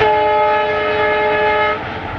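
Diesel locomotive horn sounding one steady blast of just under two seconds, cutting off near the end, over the continuous running rumble of the passenger train.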